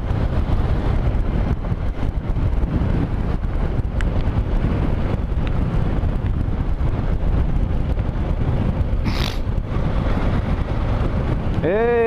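Motorcycle riding on a loose gravel road, heard from a helmet-mounted camera: a steady rumble of engine, wind and tyres on gravel, dotted with small clicks of stones, with a brief hiss about three-quarters of the way through.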